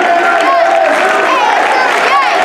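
Large crowd cheering and shouting, many voices overlapping loudly, with some clapping underneath.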